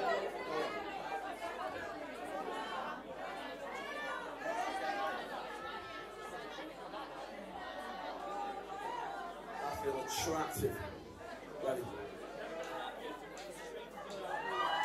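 Many people talking at once, an indistinct hubbub of conversation filling a room. A cough right at the start, and a short louder burst of noise about ten seconds in.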